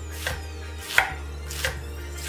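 Kitchen knife slicing rolled iceberg lettuce into fine shreds on a wooden chopping board: three crisp cuts, about two-thirds of a second apart.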